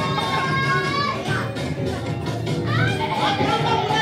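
Gospel music with voices singing.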